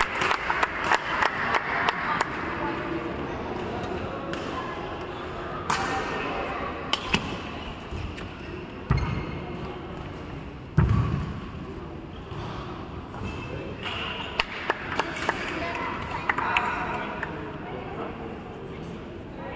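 Hand clapping for the first couple of seconds, then a badminton rally: scattered sharp racket-on-shuttlecock hits with two heavier dull thumps about 9 and 11 seconds in, over a murmur of voices echoing in a large hall.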